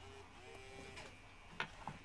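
A few faint, sharp clicks near the end from fingers on a MacBook Pro's keyboard and power button as the laptop is switched on with keys held down.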